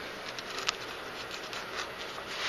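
A foam sheet is pressed by hand into the lid of a wooden box: faint rustling and light ticks, with one sharper click about two-thirds of a second in.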